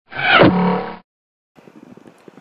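A short audio logo sound effect: a swooping sound that drops steeply in pitch, then settles into a held tone and stops after about a second. Faint outdoor background noise follows near the end.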